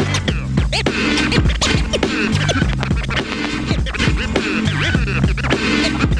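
Vinyl records scratched on turntables over a hip hop beat: quick rising and falling scratch sounds, chopped by the mixer's fader, over a repeating bass line.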